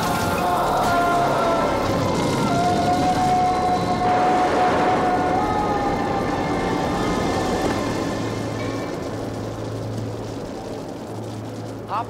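Film soundtrack music with long held notes over a steady noisy rush of fire and explosion effects, easing down over the last few seconds.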